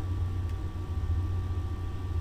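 A steady low hum with a faint hiss and a thin high tone, with one faint click about half a second in.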